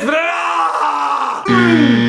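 A man's drawn-out groaning wail of dismay at a wrong guess, pitched high and sliding down. About one and a half seconds in, a loud, steady buzzing tone cuts in.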